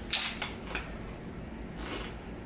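Tortilla chip being bitten and crunched: a sharp crackle just after the start, a smaller one under a second in, and another near the end.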